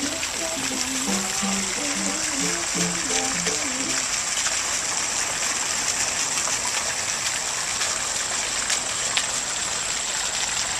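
Fountain water falling from a stone basin and splashing below, a steady hiss. For the first four seconds a soft melody fades out over it.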